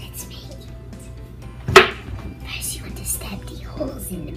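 A single sharp smack a little under two seconds in, much louder than anything else, over a steady low hum and faint background TV sound.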